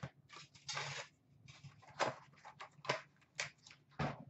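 A cardboard hockey-card hobby box and its foil packs being handled: irregular rustling and crinkling, with a few sharp clicks.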